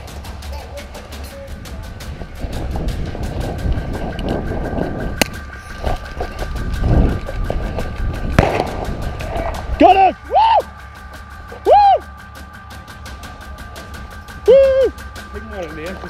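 Rustling and footsteps of an airsoft player creeping forward in the dark, with a sharp crack at about five seconds and another at about eight and a half seconds. Then come several short shouted calls.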